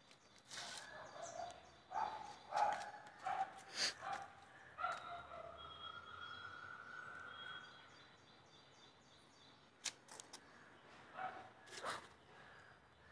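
Birds calling: a run of short calls about two to four seconds in, then one drawn-out call in the middle, over faint outdoor ambience with a few sharp clicks scattered through.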